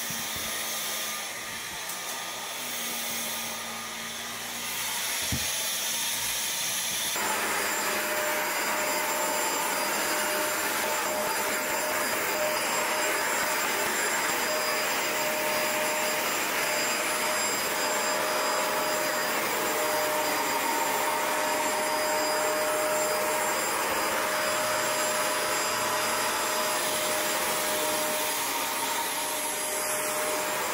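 Upright carpet washer running with a steady motor drone and a steady whine in it. It is quieter for the first few seconds, then louder and even from about seven seconds in.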